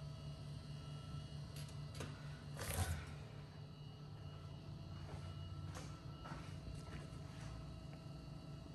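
Faint steady low hum with a few soft scattered clicks and rustles, the loudest about three seconds in.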